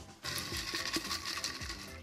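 Folded paper slips rustling and crackling as a hand rummages through them in a glass bowl, starting about a quarter second in.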